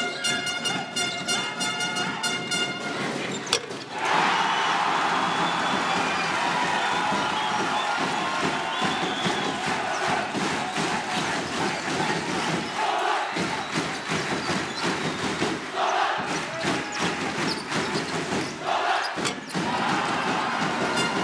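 Basketball arena crowd. Music with held notes plays for the first few seconds. About four seconds in, the crowd breaks into loud, sustained cheering and shouting, the crowd's reaction to a home basket.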